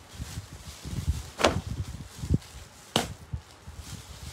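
A cotton blouse being shaken and flapped open, the fabric giving two sharp snaps about a second and a half apart, with rustling and handling of the cloth between them.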